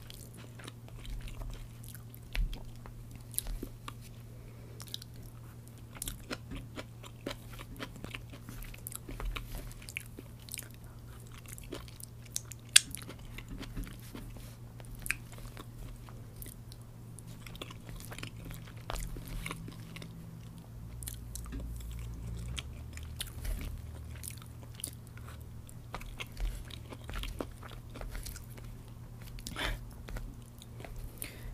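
Close-miked chewing of fried rice, with many short mouth clicks and one sharp click about 13 seconds in, over a steady low hum.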